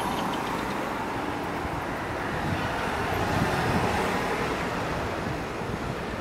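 Steady city road traffic noise: cars and motor scooters passing on the street, swelling a little about halfway through.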